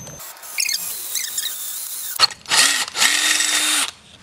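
Cordless drill boring a hole through the side of a metal scooter deck: a short burst of the motor a little past two seconds in, then a steadier run of about a second near the end, its whine rising and then holding until it stops. This run finishes the first hole.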